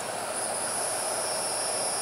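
Steady outdoor background noise: an even hiss with a thin, steady high-pitched whine over it.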